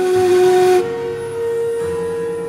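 Shakuhachi playing a loud, breathy held low note, then stepping up to a higher note that it holds steadily with less breath noise.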